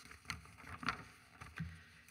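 A few faint rustles and light handling noises of paper sheets being turned over close to a desk microphone, over a low room rumble.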